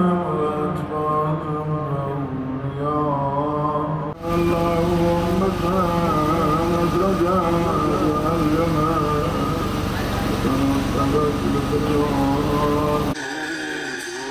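A voice chanting a Muharram mourning lament in long, wavering notes. About four seconds in the sound cuts to similar chanting over a steady background noise of street and crowd, and shortly before the end it cuts again to a different sung recording.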